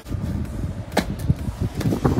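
Wind rumbling on the microphone during a run down concrete steps and a jump, with a sharp impact about a second in and a cluster of knocks and scuffs near the end as feet and hands land on the paving.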